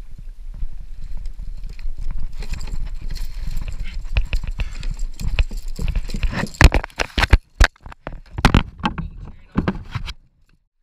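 A gaffed longtail tuna thrashing and splashing at the side of a kayak, then a handful of loud, sharp thumps at uneven gaps as it is hauled aboard and beats its tail against the plastic hull and the angler's legs.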